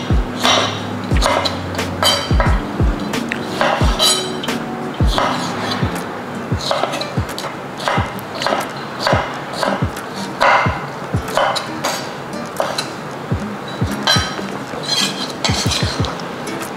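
A chef's knife cutting tomato on an end-grain wooden cutting board, the blade knocking on the wood at an irregular pace, over background music with a steady beat.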